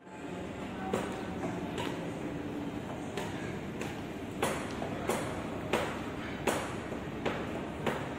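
Footsteps on a hard floor, about one step every 0.7 seconds, over the steady background noise of a large indoor hall.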